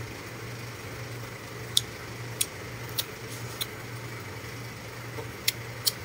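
A low steady hum with about six short, sharp clicks scattered through it, the last two coming near the end as a toddler kisses a man's cheek.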